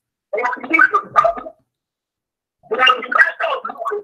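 A voice coming through a very bad online call connection, garbled and unintelligible. It breaks up into two short stretches with dead silence between them.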